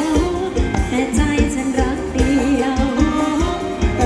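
Live Thai ramwong band music with singing over a steady, loud drum beat.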